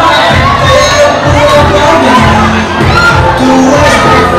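Rap music with a steady bass beat played loudly in a hall, with a crowd of children and teenagers shouting and cheering over it.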